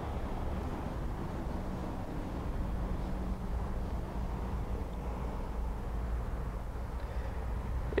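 Steady low background rumble with a faint hum, with no distinct events.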